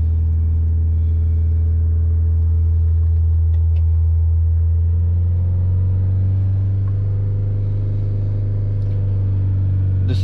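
Chevrolet Optra SRV's 1.6-litre four-cylinder petrol engine idling while it warms up, heard from inside the cabin as a steady low hum. Its pitch steps slightly higher a little past halfway.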